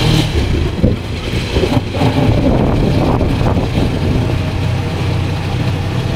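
Engine and road noise of a moving vehicle, heard from on board as a steady low hum.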